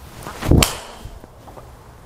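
A golf driver swung through the air, then the TaylorMade M5 Tour driver's face striking the ball off a tee once, about half a second in. The impact is very muted, typical of the head's carbon composite build.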